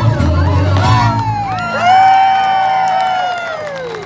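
Live Latin-American music ends, and a voice holds one long high cry that slides down near the end, while the crowd cheers.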